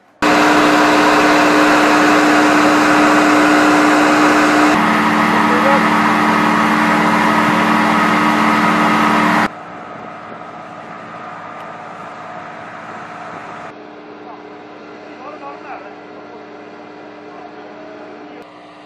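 Lockheed C-130J Hercules turboprop engines running loud, a steady drone made of several held tones. The drone's pitch drops abruptly about five seconds in. About halfway through it becomes much quieter and more distant, the engine tones still audible underneath.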